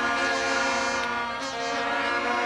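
Many plastic toy horns blown together by spectators, a dense blare of steady held tones at several pitches.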